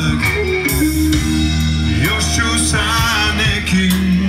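Live rock band playing: a male singer over electric guitar, bass guitar and drum kit.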